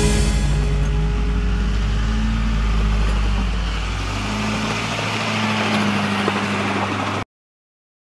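Oshkosh JLTV's Duramax V8 diesel engine running under load as the vehicle crawls over rocks, with music underneath. The sound cuts off abruptly about seven seconds in.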